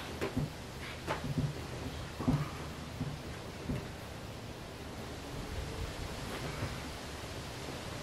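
Steady faint hiss with a few soft knocks and rustles in the first few seconds, as a man presses up from a wooden plyo box into a handstand.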